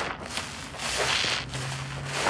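A sponge squeezed and worked by hand in thick suds of grated laundry bar soap, squishing in swells, the longest about a second in.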